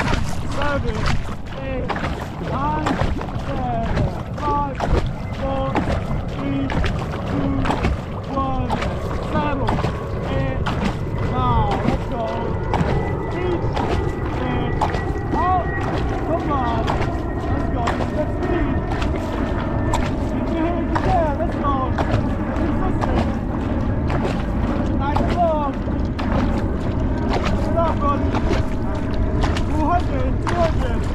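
Two-person outrigger canoe under way, paddled steadily: water rushes along the hull and splashes at the paddle strokes, with frequent clicks and short squeaky chirps over a heavy low rumble of wind on the microphone.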